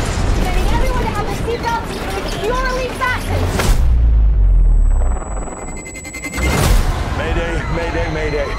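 Film-trailer sound mix: voices over music, then a sharp hit just before the middle followed by a deep, loud boom. A second sharp hit comes about three-quarters of the way through.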